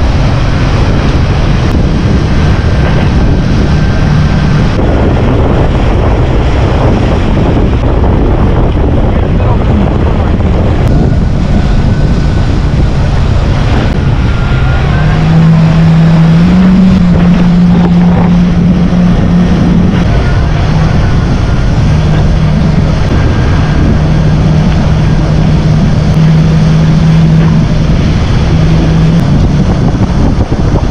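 Yamaha jet ski's engine running steadily at speed, with wind buffeting the microphone and water rushing past the hull. The engine note grows louder and steps up in pitch about halfway through.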